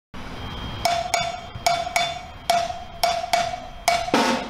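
A cowbell played alone as the intro: sharp strikes in a steady, loping rhythm, mostly in pairs, each with a short bright ring.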